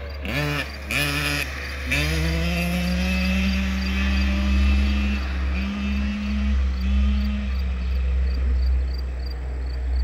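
Child's small dirt bike engine revving in three short bursts, then running at a fairly steady pitch as the bike rides away, fading after about seven seconds.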